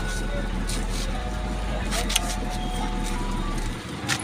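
A motor vehicle's engine running steadily at idle, a low rumble that drops away near the end, with faint voices around it.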